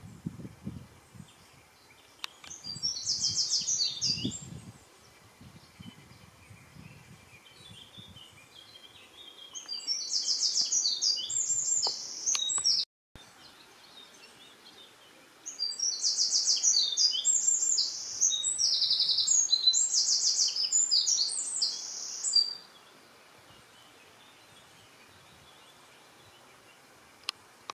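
A small songbird singing rapid, high-pitched song phrases in three bouts, the last and longest lasting about seven seconds.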